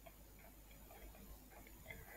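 Near silence, with a few faint light ticks from a pen writing a short label.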